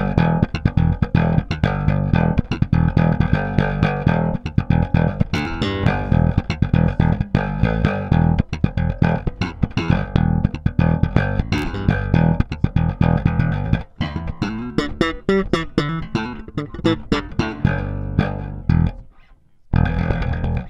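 KliraCort Jazz Bass electric bass played slap style: a fast, aggressive run of thumb-slapped and popped notes, each with a sharp percussive attack.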